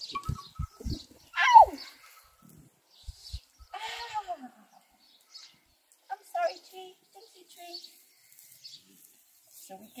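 Scattered short vocal sounds without words. The loudest comes about a second and a half in and slides down in pitch. A few low thumps fall in the first second.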